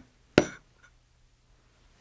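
A mallet strikes a steel veiner stamping tool into a leather belt blank lying on a granite slab. There is one sharp strike a little under half a second in with a short high ring after it, and another strike right at the end.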